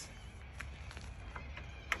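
A few light clicks over a low steady background hum, the sharpest just before the end, from hands working a caravan roll-out awning's support arm.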